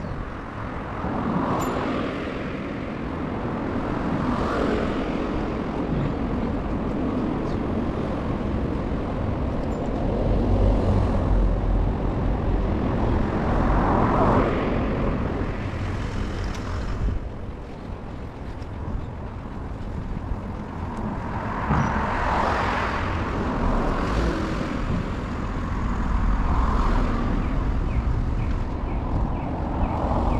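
Road traffic: several cars passing one after another, each a rising and fading rush of engine and tyre noise over a steady low rumble.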